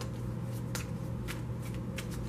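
Tarot cards being shuffled by hand: about six short, crisp card snaps at uneven spacing, over a steady low hum.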